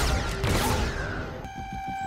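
Blaster fire from the episode's soundtrack: a sharp crack with a falling sweep. About one and a half seconds in, the score comes in with held, steady tones.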